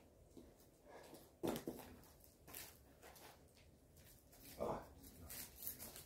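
Quiet ambience with faint rustles and one short knock about one and a half seconds in, then a brief voiced 'oh' near the end.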